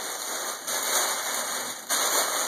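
Crumpled foil gift wrap crinkling and rustling as it is handled, growing louder a little under a second in.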